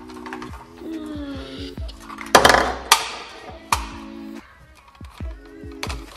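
Hard clattering knocks from the plastic grabber bucket of a toy RC crawler crane and its toy stones being handled. There is a loud cluster of knocks a little over two seconds in and two single knocks about half a second and a second later, over steady background music.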